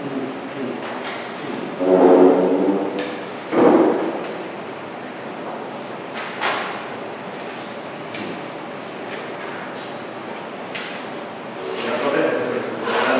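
Background noise of a large, echoing meeting hall, with scattered light knocks and clicks from handling papers and objects on tables. Two louder short sounds come about two seconds in and again a second and a half later.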